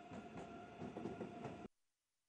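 Faint outdoor city ambience with a thin steady whine running through it, cutting off abruptly to silence a little before the end.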